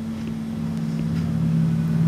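A steady low hum with a few unchanging low tones in it, at a moderate level.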